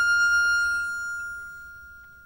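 Tango orchestra music: the chord dies away, leaving a single high violin note held and slowly fading out at the end of a phrase.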